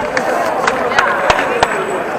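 Crowd of spectators talking and calling out, with about five sharp knocks scattered through the first second and a half.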